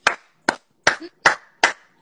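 A person clapping their hands five times, evenly, a little over two claps a second.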